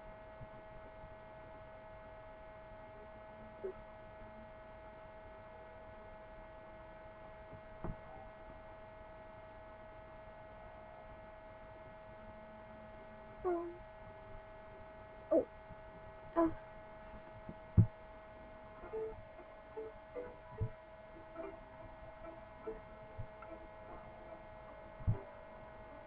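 Steady electrical hum with a faint whine. From about halfway through, a scattering of small clicks and brief faint sounds breaks in.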